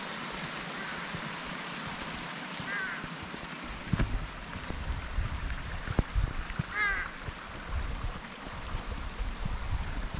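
Steady rush of a small mountain stream, with crows cawing faintly in short runs of calls twice, about three seconds in and again near seven seconds. From about four seconds in, low thuds of footsteps and camera handling join in.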